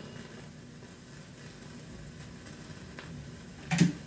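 Faint steady crackle and hiss of a phonograph stylus running in a vinyl record's groove between tracks, with a few light ticks, then a sharp thump near the end.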